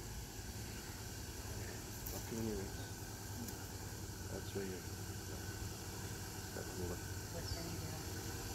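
Distant Ford four-wheel drive's engine running low and steady as the vehicle crawls slowly up a rutted clay track.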